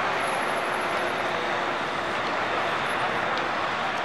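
Steady city street traffic noise: cars running along a road, an even wash of sound with no single event standing out.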